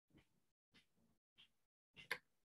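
Near silence, with three very faint, short sounds in the room.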